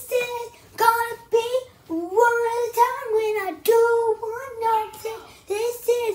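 A child singing unaccompanied: short sung phrases on a high, fairly steady pitch, with brief gaps between them.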